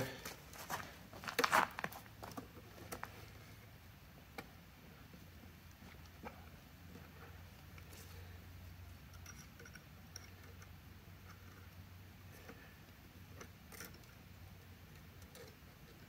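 Light clicks and scratches of steel mechanics wire being handled and squeezed together by hand, a quick cluster in the first two seconds, then only faint scattered ticks over a low steady hum.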